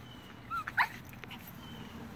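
Yorkshire terrier giving two short, high-pitched yelps in quick succession within the first second, the second louder.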